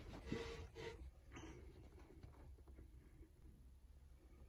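Near silence, with faint rustling in the first second or so and a brief faint rustle shortly after.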